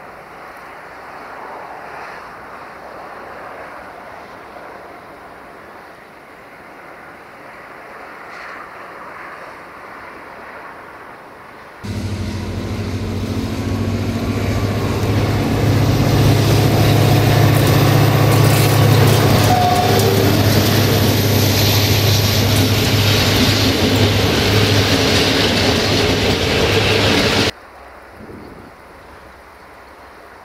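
A locomotive-hauled passenger train passing close by: the locomotive runs with a steady low engine note, together with wheel and rail noise and a high thin whine. The sound starts suddenly about twelve seconds in and stops dead about fifteen seconds later. Before it there is only a faint, even noise.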